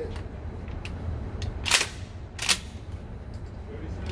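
Mossberg 500 pump-action 12-gauge shotgun being handled, with faint clicks and two sharp metallic clacks about three-quarters of a second apart in the middle, as from the slide being racked back and forward.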